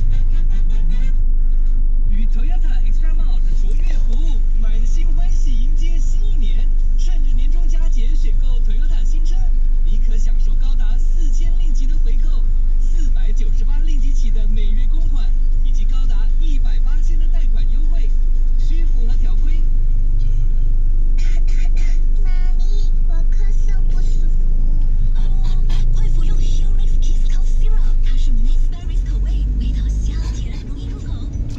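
Steady low engine rumble inside a car's cabin while stopped in traffic, with voices talking over it; near the end the low rumble swells briefly as the car pulls away.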